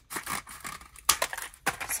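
Scissors snipping through thin cardboard press-on nail packaging, with the rustle of the packages being handled. There are a few short cuts, the loudest about a second in.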